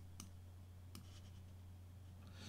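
Near silence with a steady low hum and two faint clicks of a computer mouse, as the panels of a program window are dragged to new sizes.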